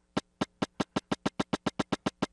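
Electronic click tracks from a Synthstrom Deluge and a Polyend Tracker slaved to its MIDI clock, ticking together as single sharp clicks. The clicks speed up from about four a second to about ten a second as the tempo is raised, staying in sync: the Tracker's clock sync correction is working.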